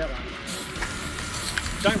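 Aerosol spray-paint can hissing steadily as paint is sprayed, starting about half a second in.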